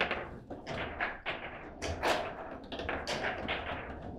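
Table football in play: a quick, irregular run of sharp knocks and clacks as the hard ball is struck by the rod-mounted plastic players and the rods are slid and spun, loudest right at the start.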